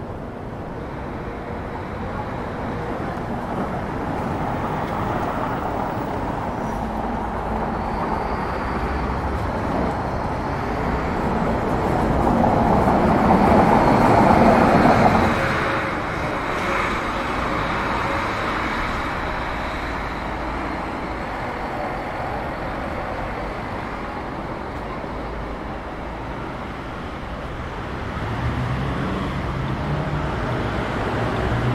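City street traffic: a steady wash of passing cars, with one vehicle passing close and growing loudest about halfway through before fading. A low engine hum comes in near the end.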